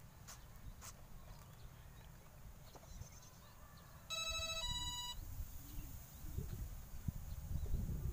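Two short electronic beeps about four seconds in, the second higher in pitch than the first, each lasting about half a second: the power-up tones of the RC glider's electronic speed controller. Low rumbling noise runs underneath and grows louder in the second half.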